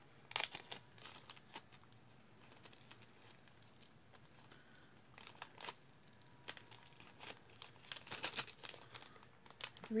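Small plastic bag crinkling and rustling in scattered short bursts as earrings are handled and bagged, busiest about eight seconds in.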